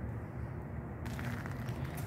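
Low, steady background noise with no distinct sound event.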